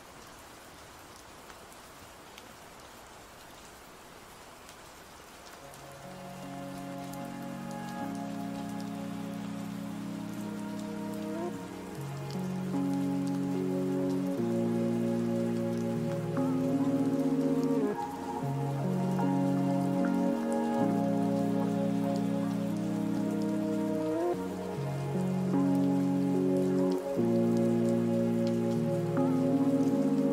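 Steady rain falling on a surface, heard alone for the first few seconds, then a mellow lofi track fades in about six seconds in. Its sustained chords change every second or two and grow louder, with the rain continuing underneath.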